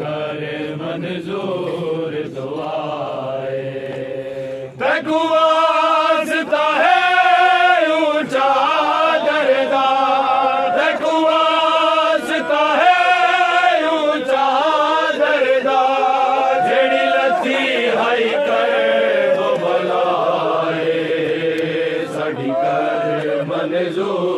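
Men's voices chanting a noha (Shia elegy), sung unaccompanied. It starts lower and softer; about five seconds in, a lead voice comes in louder and higher, holding long, wavering notes.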